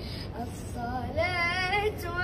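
A boy's high, unbroken voice singing an Arabic qasidah in praise of the Prophet, with wavering melismatic ornaments. After a short breath at the start, the line picks up again and swells about a second in.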